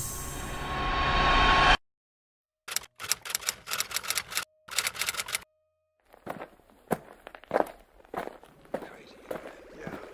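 Edited soundtrack effects: a noise swell rises and cuts off suddenly, then after a short silence comes rapid stuttering, chopped clicking in two short runs, followed by scattered broken fragments of sound.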